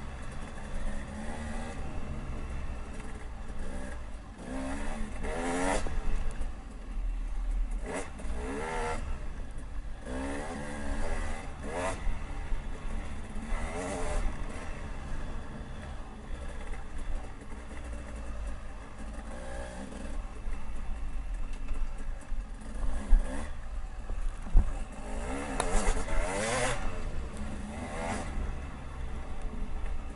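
Dirt bike engine revving up and falling back again and again as it is ridden along a rough trail, with a heavy low rumble of wind on the microphone. Two sharp knocks come a little before the end.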